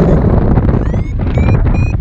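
Wind rushing over the microphone in flight, a steady low rumble. From about a second in, short high electronic beeps come quicker and rise in pitch: a paragliding variometer's climb tone, signalling lift.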